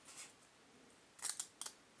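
Basketball trading cards being shuffled by hand, one sliding off the stack past the next: a faint swish, then two short crisp snaps of card against card a little over a second in.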